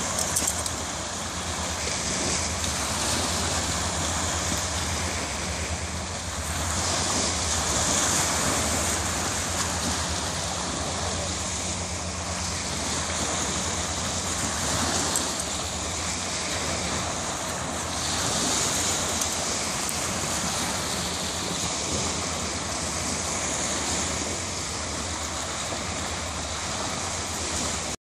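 Small waves washing onto a sandy beach, a steady surf that swells every five seconds or so, over a low rumble of wind on the microphone.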